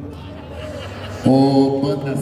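After a quieter first second, an amplified voice suddenly holds one long, loud sung note.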